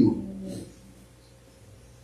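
The last spoken word of a prayer trails off and fades within the first half second. Quiet room tone follows.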